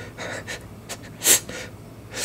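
A man's sharp, airy gasp, an intake of breath through the mouth, loudest just past halfway, with softer breaths before it.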